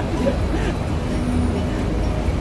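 Steady low rumble of city street traffic, with a brief engine note in the second half and faint voices.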